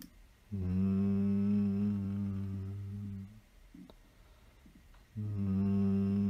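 A low voice humming a long, steady nasal "N" tone twice, each held about three seconds at one pitch, in Zhineng Qigong sound toning.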